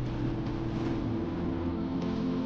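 Ambient electronic track: sustained synth drone notes held over a textured, hissy noise bed, with no beat.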